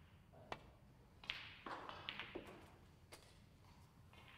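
Snooker balls clicking on the table. A sharp cue strike comes about half a second in, then a louder ball-on-ball click just over a second in with several lighter knocks after it, and a last click about three seconds in.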